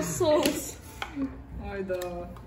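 Voices talking softly in a small room, with a single light click about half a second in.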